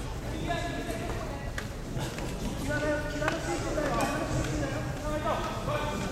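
Indistinct voices talking in the background, with a few sharp knocks mixed in.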